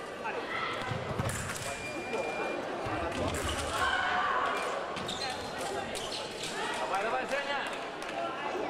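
Sabre fencing exchange: footwork thuds on the piste and sharp clicks of blade contact, with a short steady beep about two seconds in. Voices and shouts ring in a large, echoing hall.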